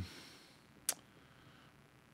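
Near silence: quiet room tone with a single short, sharp click a little under a second in.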